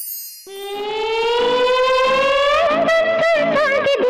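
A short high falling swish from a graphic transition, then the opening of a Hindi film song: one long note gliding slowly upward and starting to waver near the end.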